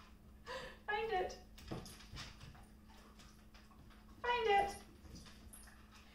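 A young dog whining briefly twice, the second whine falling in pitch, with light ticking, likely its claws on a hardwood floor, in between.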